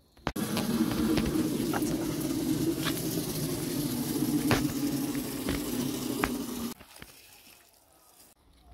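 Water pouring steadily from a plastic watering can, with a few light ticks, cutting off suddenly about a second before the end.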